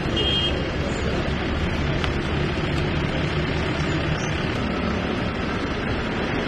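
Steady outdoor background noise with a low rumble like road traffic, and a brief high double beep just after the start.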